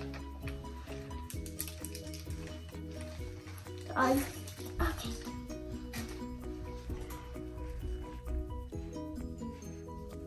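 Background music with a simple melody of short, stepping notes, with a brief voice sound about four seconds in.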